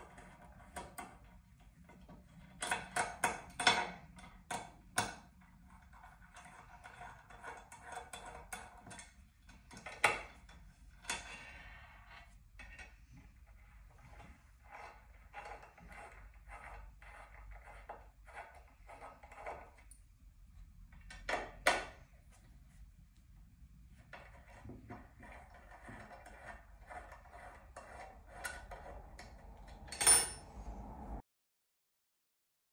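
Small bolts being undone and lifted out of a metal base plate: runs of light metallic clicking and scraping from the tool, with a few louder clinks as parts are set down, the loudest about ten and twenty-one seconds in.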